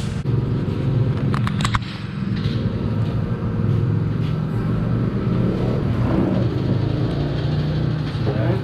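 An engine running steadily nearby, a continuous low drone, with a few quick clicks about a second and a half in.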